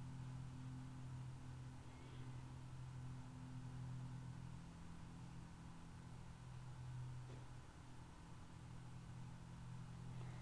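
Faint, steady low hum of room tone; no distinct sound stands out.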